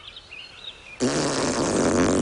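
A cottonmouth snake hissing: a loud hiss that starts suddenly about a second in, over faint bird chirps.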